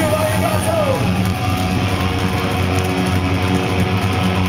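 Live rock band playing loudly, with electric guitars, bass and drums. A voice sings a wavering line over it in the first second.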